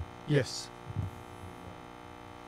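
Steady electrical mains hum made of many even tones, with the word "Yes" spoken briefly about a third of a second in and a short low bump about a second in.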